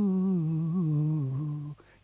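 A man singing one long held 'o' note to show a melody, the pitch sinking a little partway through with small wavering turns before it stops near the end.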